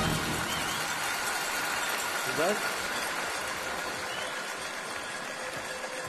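Studio audience applauding with a bright jingling, which fades slowly.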